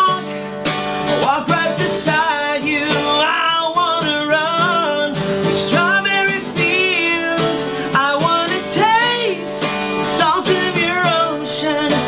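A man singing with vibrato over his own strummed steel-string acoustic guitar.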